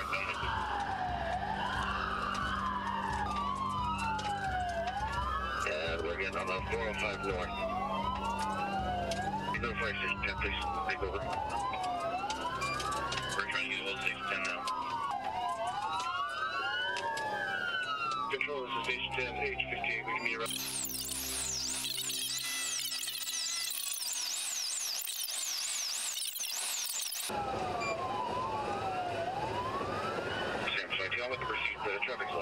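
Police siren wailing, rising and falling about every two seconds, with a second wail overlapping it, over vehicle engine and road noise. For several seconds past the middle, faster, higher-pitched sweeps take over and the low road noise drops out, before the slow wail returns.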